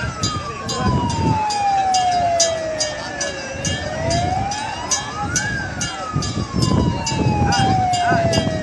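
Fire engine siren wailing, slowly rising and falling in pitch in a cycle of about six seconds, with a second, higher siren tone over it. A rapid regular pulse about two to three times a second and a low rumble run underneath.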